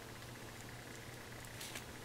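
Faint scratchy strokes of a piece of card smearing Goop adhesive into a tear in a vinyl seat cover, mostly near the end, over a low steady hum.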